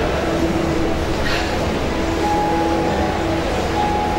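A loud, steady rumbling noise that fills the room, with a few faint held notes sounding over it, one early on and another from about halfway.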